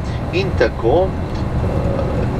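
Steady low rumble of a coach's engine and tyres, heard from inside the cabin while driving along a motorway, with a short fragment of a man's speech about half a second in.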